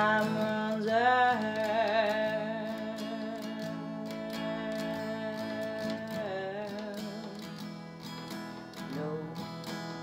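Strummed acoustic guitar under a singer holding one long, wavering note for about five seconds, then dropping to lower notes near the end.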